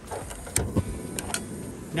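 A few faint clicks and knocks of a cast iron skillet being handled and set down on a portable gas stove, over a steady low background noise.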